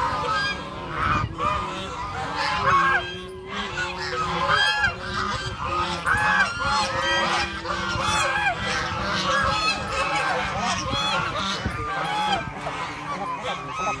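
A large flock of domestic geese honking continuously, many calls overlapping at once.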